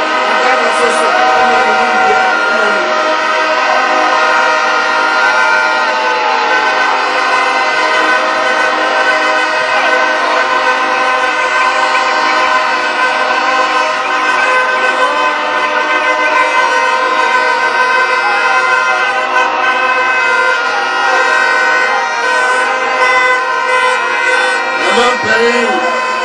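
A rally crowd sounding many horns at once: a loud, unbroken din of held tones, with a few notes bending up and down.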